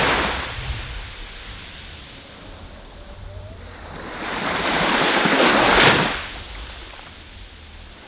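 Waves breaking and washing up a shore: one surge of surf fades away at the start, and the next builds to a peak about six seconds in before dying away, over a low rumble.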